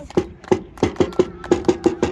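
Football supporters clapping in a steady rhythm, about three claps a second, in the gap between chants.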